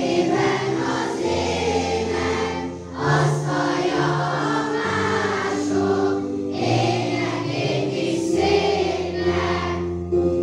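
A large group of schoolchildren singing a song together as a choir, over low sustained bass notes, with a short pause between phrases about three seconds in.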